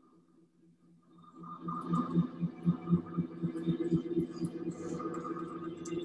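Soundtrack of an art-installation video: a drone of several held tones with a throbbing pulse about four times a second and scattered high clicks, fading in about a second in.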